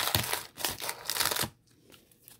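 Hard plastic card holders clacking and scraping against each other as a stack of them is pulled out of a briefcase slot; the handling noise stops about a second and a half in.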